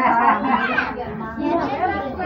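Several people talking at once: overlapping chatter of voices in a room.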